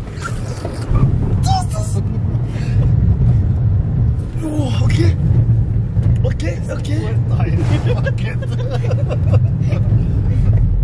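Car engine and road noise heard from inside the cabin while driving: a steady low drone, with voices and laughter over it.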